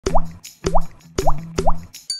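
Four cartoon water-drop plop sound effects about half a second apart, each a quick rising bloop, over a low steady tone.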